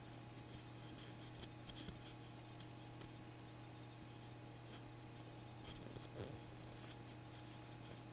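Faint handling noise: light scratching and small clicks of fingers shifting a small plastic gem box, over a steady low hum, with a brief cluster of clicks about six seconds in.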